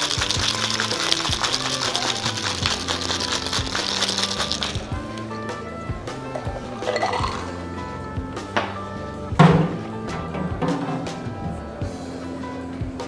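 Ice rattling hard inside a Boston shaker (mixing glass capped with a metal tin) being shaken to chill the cocktail, stopping about five seconds in. Background music plays throughout, and a single sharp knock comes near the ten-second mark.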